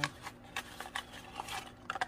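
Light, scattered taps and rustles of a small cardboard raisin box being handled and shaken out over a mixing bowl.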